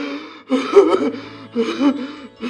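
A man sobbing loudly in broken, gasping bursts, about three cries in two seconds, his voice wavering in pitch.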